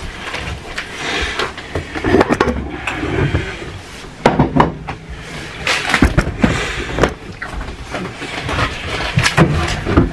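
Irregular knocks, thumps and rustling from handling things in a kitchen: a large wooden board being moved and bumped at the sink, with low rumble from the camera being carried.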